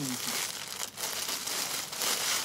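Steady crinkling rustle of a dress and its wrapping being handled.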